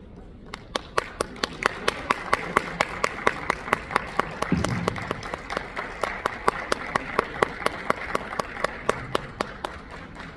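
Audience applauding at the end of a jazz band number, starting about half a second in. One loud clapper close to the microphone stands out, clapping about four times a second over the wider applause.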